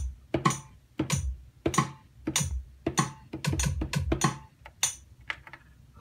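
Sampled kick drum and rim hits played from the pads of an Akai MPC Renaissance, tapped in live over a metronome click at 97 beats per minute, with a strike about every 0.6 s and a few quicker hits in between.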